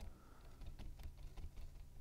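Faint, irregular small taps and rustles of a cardstock piece and a plastic glue-bottle nozzle being handled as glue is dabbed onto a paper tab.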